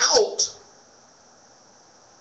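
A man's speaking voice trailing off in the first half-second, then a pause with only a faint steady hiss.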